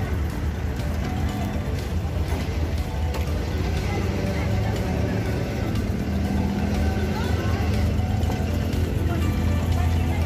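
Steady low hum of a wooden abra ferry's engine running at the quay, with background music laid over it.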